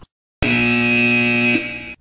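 A buzzer sounding once, a steady, unwavering tone of about a second and a half that starts abruptly after a brief silence; it signals that time is up.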